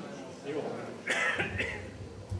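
A person coughs: a sharp cough about a second in, followed by a shorter second one.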